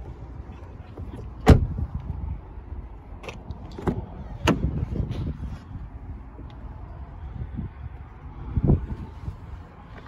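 SEAT Ateca's rear car door shut with a sharp thud about a second and a half in. Then come several lighter knocks and clicks of a door handle and latch as the front door is opened, with low handling rumble underneath.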